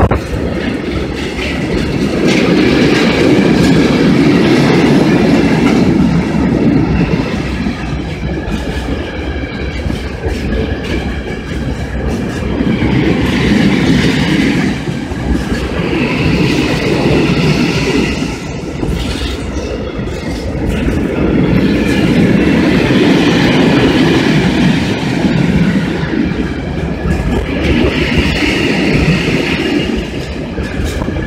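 Freight train of tank wagons passing close at speed: wheels rumbling and clattering over the rail joints, the noise swelling and easing as the wagons go by. A high wheel squeal comes and goes over the rumble.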